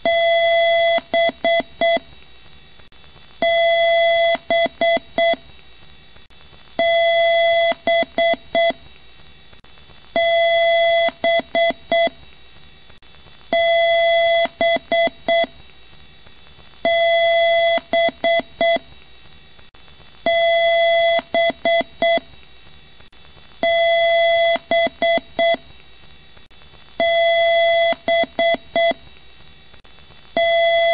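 Computer beep tones, a buzzy square-wave beep like a PC speaker's, in a repeating BIOS-style beep code: one long beep of about a second followed by a few short beeps, the pattern coming round about every three and a half seconds.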